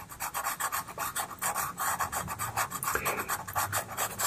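Pastel pencil scratching on pastel paper in rapid short shading strokes, several a second, lightening an area of the drawing.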